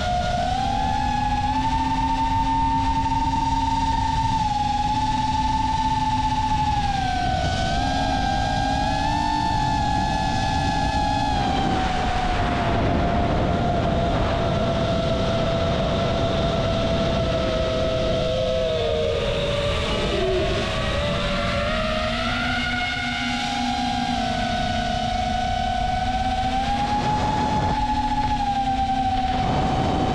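Small drone's electric motors and propellers whining in flight, the pitch rising and falling with the throttle and dropping for a few seconds about two-thirds of the way through, over a rough rush of air.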